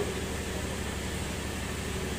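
Steady low hum and hiss of background noise in a pause between spoken phrases.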